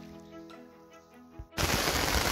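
Quiet background music with sustained notes, then about one and a half seconds in a sudden cut to heavy rain falling on a tarp overhead, much louder than the music.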